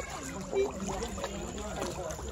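Indistinct chatter of several people talking at once, over a low steady wash of moving water at the pond's edge.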